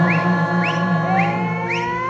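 Live band music: held notes over a steady bass, with a run of short rising, whistle-like swoops, about two a second.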